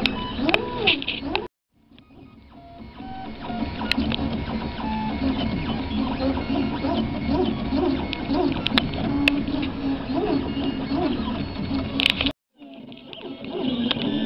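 Desktop 3D printer's stepper motors whining as the print head travels back and forth laying down filament, their pitch rising and falling with each move. The sound cuts out briefly twice and fades back in.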